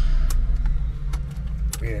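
Honda S2000's four-cylinder engine idling, heard from inside the cabin as a steady low hum. A few light clicks from hands working around the console.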